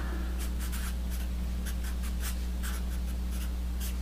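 Sharpie felt-tip marker scratching across paper in a quick run of short strokes as an equation is written out, over a steady low hum.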